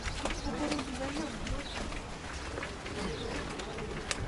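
Indistinct voices of a group of people walking close by, with a low, wavering call in the first second or so.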